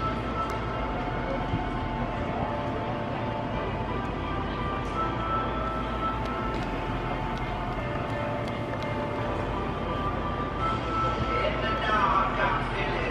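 Music with long held tones, over an indistinct murmur of voices.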